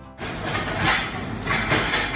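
Raw sliced beef sizzling on a hot tabletop electric griddle: a steady hiss that swells about a second in and again near the end.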